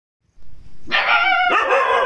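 A Chippiparai puppy about 45 days old barking: a couple of high-pitched, drawn-out yelping barks starting about half a second in.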